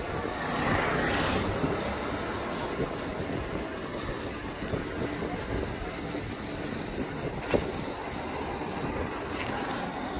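Road traffic noise with wind rumble on the microphone, heard from a moving bicycle, with a louder swell about a second in and a single sharp knock near three-quarters of the way through.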